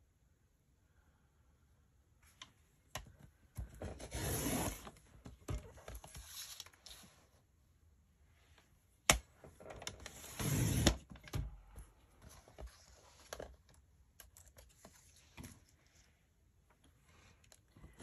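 Fiskars sliding paper trimmer cutting a photo, two swishes of the blade head running along the rail about six seconds apart, each about a second long, trimming each side. Between the cuts come light clicks and taps as the photo and trimmer are handled, one sharp click just before the second cut.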